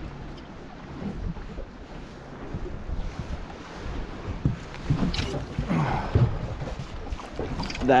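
Low wind rumble buffeting the microphone and water lapping against a small boat's hull, with a few soft knocks past the middle.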